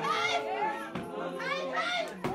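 A congregation's voices overlapping: several people singing and calling out at once, some holding notes while others rise and fall in pitch.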